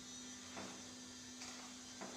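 Quiet room tone with a steady low electrical hum. Two faint, soft rustles, about half a second in and again about a second later, as a paper word card is handled and pressed onto a felt board.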